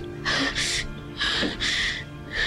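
A woman crying, drawing two pairs of sharp, gasping sobbing breaths, over soft background music with long held notes.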